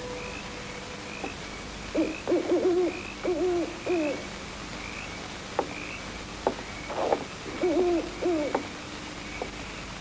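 An owl hooting in two runs of several hoots, the first about two seconds in and the second about seven seconds in.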